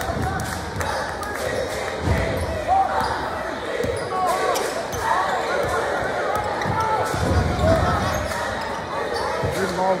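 A basketball dribbled on a hardwood gym floor, with short sneaker squeaks, over the steady chatter of a crowd in the stands.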